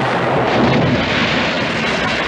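Movie sound effects of an explosion and the fire that follows: a loud, dense, continuous blast noise with no single sharp bang.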